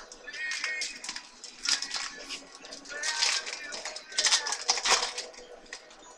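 Trading-card pack wrapper and cards being handled: crinkling and rustling in three or four short bursts.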